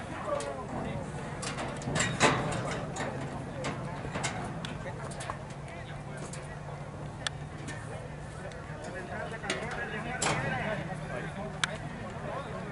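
Scattered knocks and clanks from a metal horse-race starting gate while horses are loaded. Under them are people talking in the background and a steady low hum. The loudest knocks come about two seconds in and again about ten seconds in.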